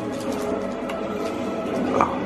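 Background music with a steady, even sound.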